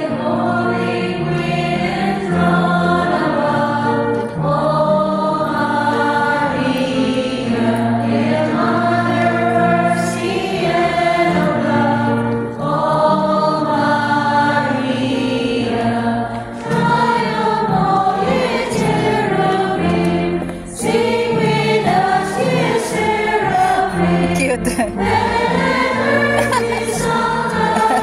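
A choir singing a hymn with instrumental accompaniment, continuous throughout.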